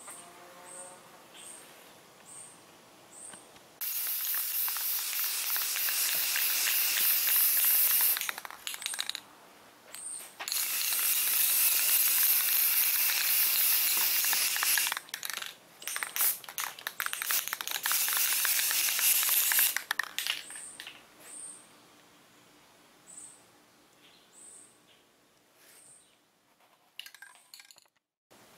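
Aerosol can of flat black spray paint hissing in several bursts as it mists a guide coat onto a primed fiberglass panel: two long bursts of about four seconds, then shorter spurts, starting about four seconds in and stopping about twenty seconds in.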